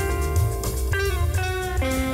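Small jazz band playing live: alto saxophone and electric guitar holding melody notes over double bass and drums, the notes changing about every half second.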